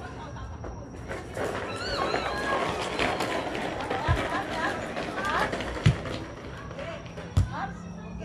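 Several people's voices calling out and chattering indistinctly during an outdoor volleyball game, with three sharp dull thumps in the second half.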